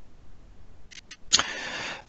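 A few faint clicks, then a sudden burst of hiss lasting about half a second: noise picked up on a meeting participant's microphone.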